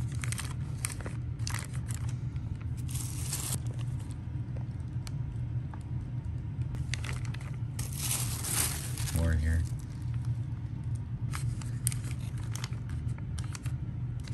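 Plastic bags crinkling in irregular bursts as water-filled bags of coral are handled and packed into a soft-sided lunchbox cooler, over a steady low room hum.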